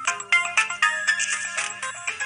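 Mobile phone ringtone playing a quick electronic melody of short notes: an incoming call.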